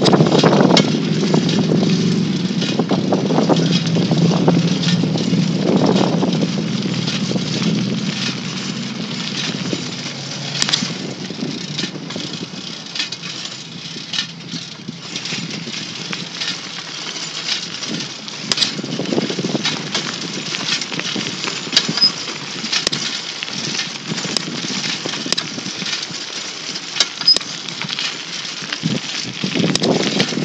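An engine running, loudest for the first several seconds and then fading, with scattered sharp clicks throughout.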